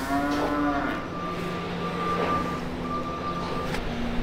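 A Holstein heifer moos once, a call of about a second right at the start. Under it and after it run a steady low hum and a thin high tone that comes and goes.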